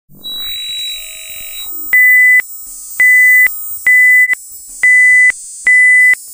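A synthesizer tone sweeps up and holds for about a second and a half. Then come five short, loud electronic beeps, all on the same high pitch, about one a second.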